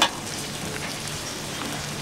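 Steady soft sizzle of a wedge of cheese melting in a small stainless warmer heated from below, over a faint steady hum. A light click at the very start.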